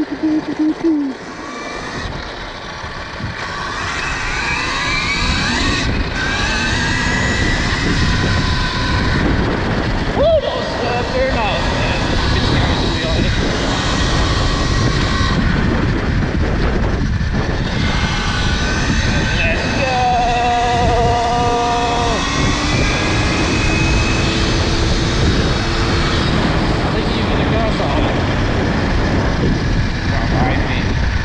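KTM Freeride E-XC electric enduro bike pulling away and cruising, its electric motor whine gliding up in pitch as it gathers speed, under steady rushing wind on the helmet microphone. The noise swells over the first few seconds and then holds level.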